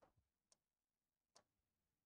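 Near silence: room tone with two faint, short clicks about a second apart.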